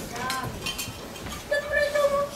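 Spoons clinking against metal bowls and mess tins, a few light clinks among children's voices.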